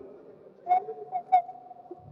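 A thin, steady whistle-like tone starting under a second in and running on, with a few short blips over it.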